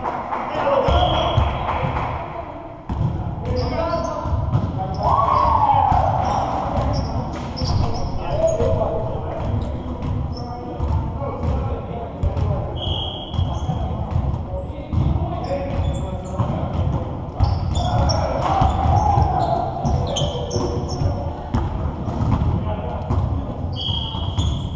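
Basketballs bouncing and being dribbled on a hardwood gym floor, a steady run of sharp knocks that echo in the large hall, with players' voices calling in the background.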